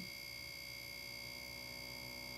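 Faint, steady tones from a woofer playing a low-frequency sine wave at low amplitude, with a thin, steady high-pitched whine over it.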